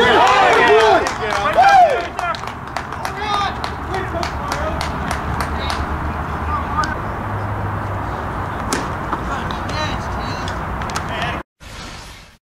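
Several voices shouting and yelling over a ball put in play, loudest in the first two seconds, then fading to open-air field background with scattered faint voices and small clicks. The sound drops out abruptly near the end.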